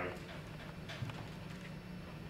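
A few soft, scattered taps over a steady low room hum.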